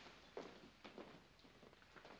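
Near silence: the film soundtrack's faint hiss, with a few soft knocks in the first second.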